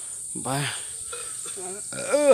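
A steady, high-pitched drone of insects in the surrounding scrub forest, with a few quiet spoken words over it.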